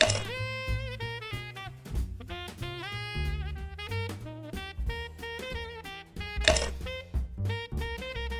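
Jazzy instrumental background music: a pitched lead melody over a steady drum beat.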